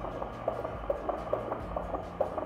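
Fetal heartbeat through a handheld Doppler monitor: quick, even whooshing pulses over a low steady hum.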